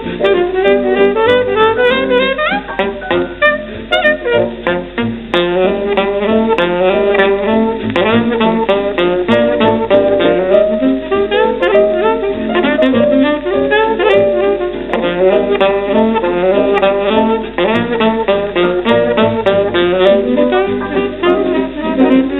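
1936 Telefunken record of a virtuoso saxophone solo with piano accompaniment: the saxophone plays fast, agile runs of rapid notes without a break.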